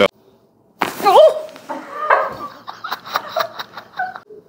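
A woman's sliding vocal cry about a second in, then a quick run of sharp clicks and smacks from a chiropractic adjustment on a treatment table.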